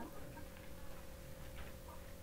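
A faint pause in speech over a Zoom video-call connection: low room tone with a thin steady hum.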